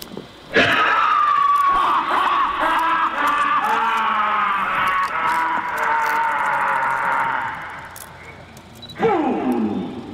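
A person's voice screaming and wailing over loudspeakers in a rough recording: one long wavering cry lasting about seven seconds, then a shorter cry falling in pitch near the end. This is the ritual 'victim's' cry played through the speakers.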